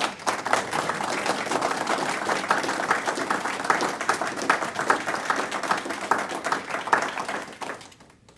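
Audience applause: many people clapping together, a steady dense patter that thins out and stops near the end.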